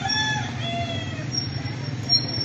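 A rooster crowing once, a multi-part call that ends a little over a second in, over a steady low rumble of street noise.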